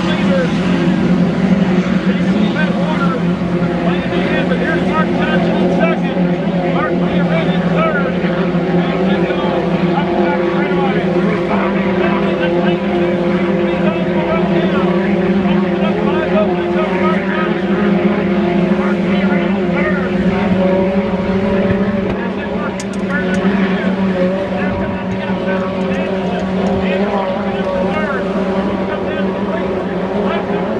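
Racing hydroplanes of the 2.5-litre class running flat out on the course, a continuous loud engine drone with a steady hum that shifts slightly in pitch as the boats go by. The drone eases off a little about three-quarters of the way through.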